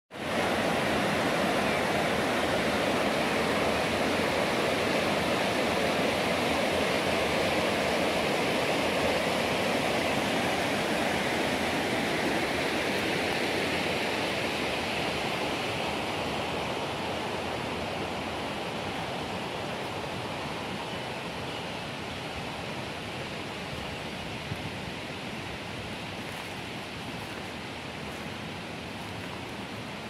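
Mountain river rushing over boulders in white-water rapids: a steady rush that grows gradually fainter through the second half.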